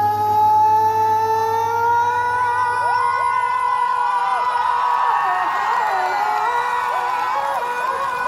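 Concert crowd cheering and screaming at the end of a song, many high whoops rising and falling, over the band's last held notes. A low bass note fades out about four seconds in.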